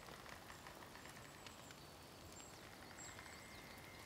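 Near silence: faint forest ambience with a few brief, faint, high-pitched bird chirps.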